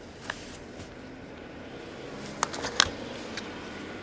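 Trading cards being handled and flipped through by hand, card stock rustling faintly with a few short clicks as the cards' edges knock and slide against each other.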